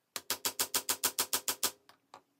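A mallet rapidly striking a metal hollow hole punch, about eleven quick even taps at roughly seven a second with a light metallic ring, then a couple of fainter taps near the end. The punch is being driven through thick layers of fabric on a wooden board to cut holes for grommets.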